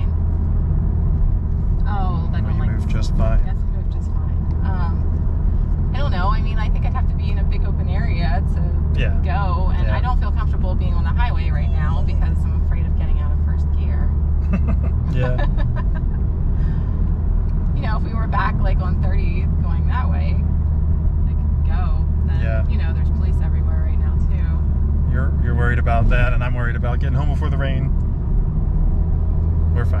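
Honda Civic Type R's turbocharged four-cylinder engine and tyres heard from inside the cabin while cruising: a steady low drone with no revving, and voices talking over it.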